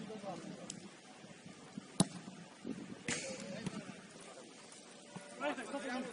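A football is struck once, hard, about two seconds in, giving a single sharp thump. Faint shouts of players on the pitch are heard around it.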